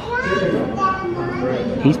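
Children's voices talking and calling out, with a man starting to speak near the end.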